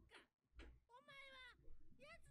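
Faint, quiet dialogue from the subtitled anime episode playing under the reaction: a single drawn-out spoken phrase about a second in, otherwise near silence.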